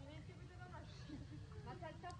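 Faint voices talking, over a low steady rumble.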